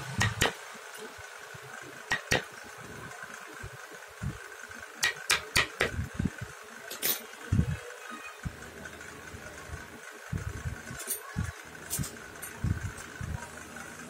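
A small wood-carving chisel tapped with a flat wooden mallet block as it cuts a relief pattern into a wooden dome: sharp taps at uneven intervals, some in quick runs of several, over a steady hum.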